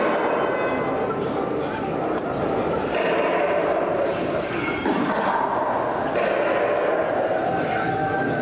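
Dark-ride show soundtrack: a continuous jumble of indistinct voices and scene sound effects, with no clear words.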